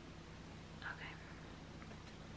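A person's brief, faint whisper about a second in, over a low steady hum.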